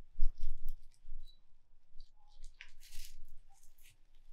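Rustling and crinkling of a plastic apron and a damp wash mitt as a foot is wiped, in short irregular scuffs, the loudest a low bump just after the start.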